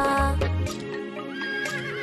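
Instrumental music from a children's song, then a horse whinnying in the second half, with a wavering, gliding pitch.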